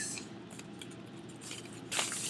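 Paper cash register tape rustling softly as it is creased and then unfolded, with a louder crinkle near the end.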